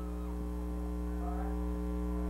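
Steady electrical mains hum, a low buzz made of several even, unchanging tones, with faint traces of distant voices in the background.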